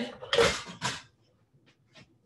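A person laughing in two short, breathy bursts, then near silence.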